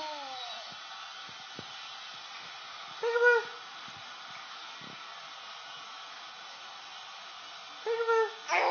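Short high-pitched voice calls in a game of peek-a-boo with a toddler. A falling call fades out in the first half second, a single brief call comes about three seconds in, and another starts right at the end. Between them there is only a steady hiss.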